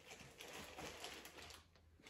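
Faint rustling and a few light taps of small craft items being handled and put away.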